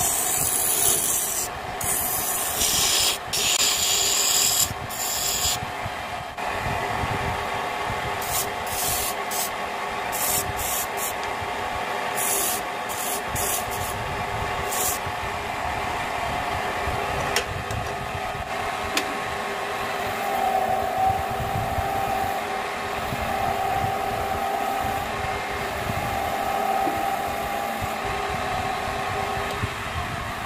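Wood lathe running with a steady motor hum while a hand-held chisel scrapes into a spinning mahogany vase blank: loud cuts for the first six seconds or so, then shorter, broken cuts until about fifteen seconds in. After that the lathe runs on with lighter, steadier contact on the wood.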